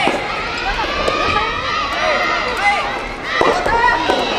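Many overlapping voices shouting and calling throughout. Over them, a soft-tennis ball is struck by a racket twice: once at the start and again about three and a half seconds in.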